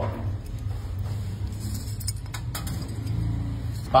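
Whole dried cloves dropped into a glass bottle, a few light clicks and rattles against the glass around the middle, over a steady low hum.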